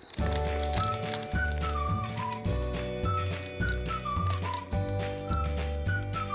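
Background music: an upbeat instrumental with a high melody that steps downward in short repeated phrases over held chords, a bass line changing every half second or so, and a light regular tick.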